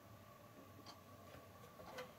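Near silence in a quiet room: faint ticks about once a second over a faint steady whine.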